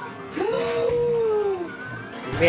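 A woman's long, drawn-out excited cry that rises quickly in pitch and then slides slowly down over more than a second. It is an excited reaction to a stick-drop crane game as the stick lands in the prize hole.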